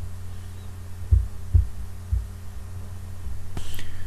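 Steady low electrical hum on the recording, with three dull low thumps in the first half, like bumps against the desk or microphone, and a brief sharper noise near the end.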